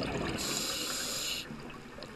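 Scuba diver breathing through a regulator underwater: exhaled bubbles rumble and gurgle from the exhaust, with a hiss of air through the regulator from about half a second in that cuts off sharply at about a second and a half.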